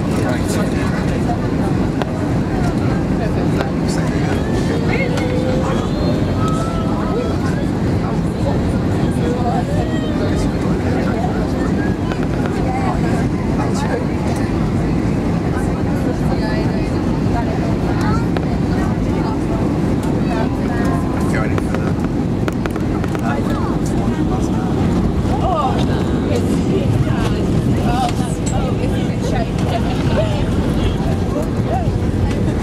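Steady engine and airflow noise inside the cabin of an easyJet Airbus A320-family airliner on final approach and landing, with passengers chattering indistinctly over it.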